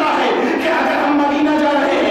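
A man preaching in a loud, raised voice, drawing out long held vowels.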